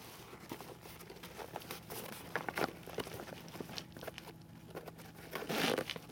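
Nylon backpack being handled: fabric rustling with scattered small clicks, and a louder rasp near the end.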